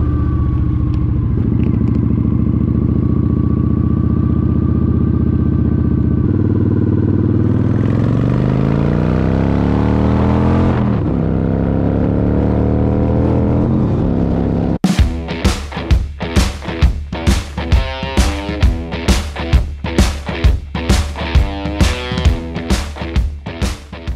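Loud motorcycle engine running steadily, then rising in pitch as the bike pulls away and dropping back at a gear change. About fifteen seconds in it cuts abruptly to music with a steady beat, about two beats a second.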